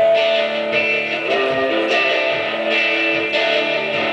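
Strummed acoustic guitar with a Native American flute playing long held notes over it, in an instrumental break between sung verses of a folk song.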